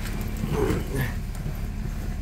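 Peugeot RCZ engine idling steadily with a low hum, running on a freshly fitted rebuilt fuel pump.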